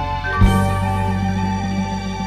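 Background music of sustained, held chords, with a new chord and low bass note struck about half a second in that rings on and slowly fades.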